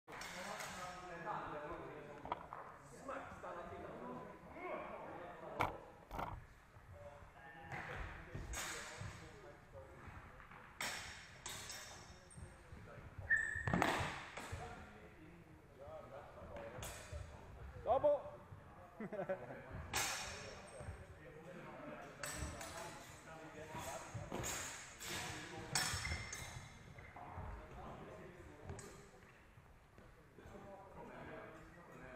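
Irregular sharp clacks and clinks of steel training swords striking each other, mixed with thuds of feet on a sports-hall floor, all echoing in a large hall; one blow about 13 seconds in leaves a brief ring.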